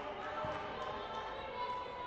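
A futsal ball being played on a hardwood gym court, with one low thump about half a second in, over the echoing noise of a large hall with faint voices.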